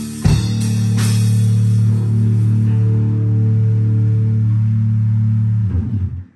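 Drum kit and bass guitar strike a final accent together about a third of a second in, then the low bass note rings out steadily while the crash cymbal wash fades, until the note is cut off just before the end: the last chord of a rock song.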